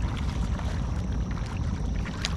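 Wind buffeting the camera's microphone, a steady low rumble, with scattered small clicks and a faint thin high whine.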